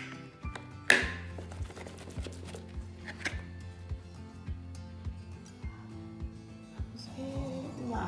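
Background music with a steady beat. Over it, the aluminium pudding mould clanks sharply against the plate about a second in and again at about three seconds as it is shaken to free the chilled pudding.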